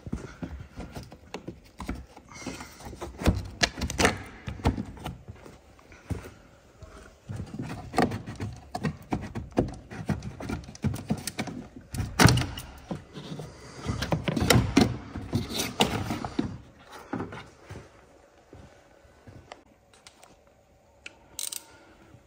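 Plastic scuttle panel at the base of a Mini's windscreen being worked loose and slid out by hand: a run of hard-plastic knocks, clicks and scrapes, thinning out over the last few seconds.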